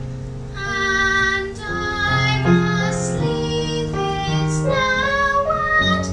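A group of children singing a song together over a low, steady instrumental backing, the words' consonants audible as brief hisses twice.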